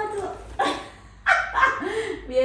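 Domestic cat meowing twice, once at the start and once near the end, as it is let out of its soft travel carrier, with brief rustling of the carrier in between.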